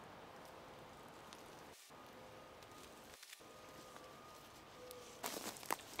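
Faint rustling of cherry tomato plants' leaves and stems as tomatoes are picked by hand, over a quiet outdoor background, with a few sharper rustles near the end.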